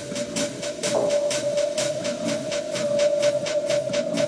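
Minimal techno from a live DJ mix: a long held synth tone over fast, even percussion ticks, about four a second, with little deep bass.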